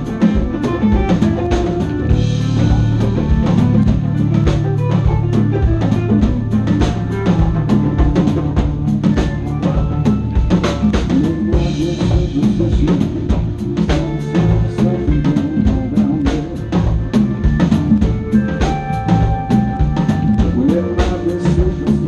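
Live blues-rock band playing loudly: a drum kit keeps a steady beat with bass drum and snare, under bass and electric guitar, and a harmonica played cupped against the vocal microphone.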